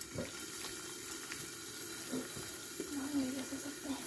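A hand mashing and mixing a wet tomato chutney in a bowl: soft, wet squelching over a steady low hiss.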